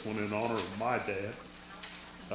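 A man speaking into a microphone for about a second and a half, then a faint steady tone.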